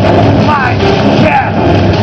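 Loud live electro-industrial (EBM) music: a heavy, distorted electronic drone and beat with a voice over it, sliding in pitch.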